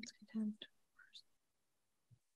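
A voice briefly muttering a few quiet, indistinct words over a video call, with silence after about the first second.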